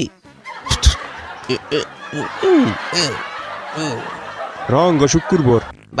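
A man's voice making comic noises and snickering, with pitch gliding up and down, over a steady hiss.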